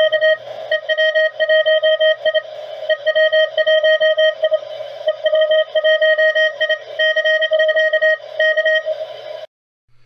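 Morse code (CW) tone from a QRP amateur radio transceiver, a single pitch of about 650 Hz keyed on and off in short dots and longer dashes. It stops shortly before the end.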